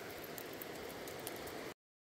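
Faint outdoor background hiss with a few small scattered ticks. It cuts off abruptly into dead silence near the end.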